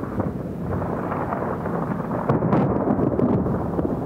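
A steady, low rumbling like thunder, a storm sound on the stage soundtrack.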